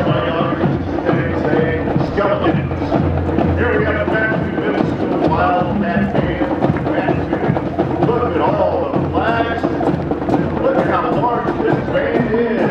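A school marching band playing as it marches past, with trumpets and saxophones, and voices from the crowd mixed in.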